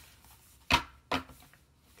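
A pad of paper sheets being handled and set down: two sharp knocks about half a second apart, the first louder.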